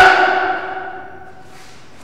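A single struck, bell-like metallic ring with a sharp attack that dies away over about a second. A faint swish follows near the end.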